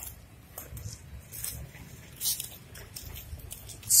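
Low rumble with a few light scuffs and taps on a concrete surface, the loudest about two seconds in, from quad roller skates and movement on the court.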